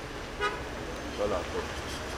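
Outdoor street ambience with a low steady rumble, a short car-horn toot about half a second in, and indistinct voices in the background around a second and a half in.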